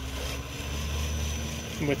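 Axial Capra RC rock crawler's small electric motor and drivetrain running as it drives through a turn with its dig function engaged, with a thin, steady high whine over a low rumble.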